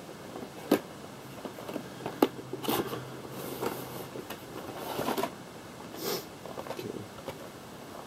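Handling of a toy figure's box and packaging: two sharp clicks, then short bouts of scraping and rustling as it is opened and the contents partly slid out.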